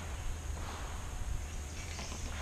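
Quiet outdoor background: a steady low rumble and a faint even hiss, with no distinct sound events.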